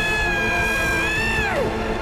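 A woman's long, high-pitched shriek of manic laughter, held steady for about a second and a half, then falling away in pitch, over dramatic music.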